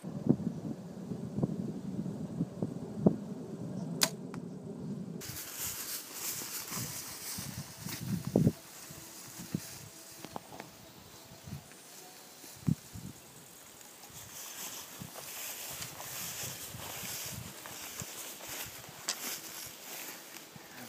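A compound bow shot from the PSE Dream Season Decree: a sharp snap of the string on release a few seconds in. After that comes a steady high hiss of insects and grass, with scattered rustles of footsteps through tall grass.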